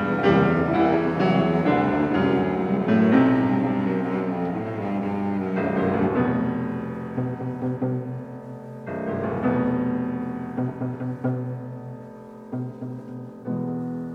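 Classical piano trio playing: the cello holds low sustained notes under piano chords. The music grows quieter in the second half, with fresh chords struck about nine seconds in and again near the end.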